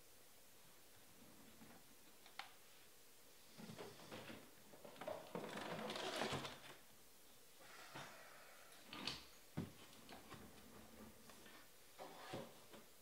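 Faint handling noises off camera: a few scattered light knocks and clicks, with a longer rustle about six seconds in, as things are picked up and moved around.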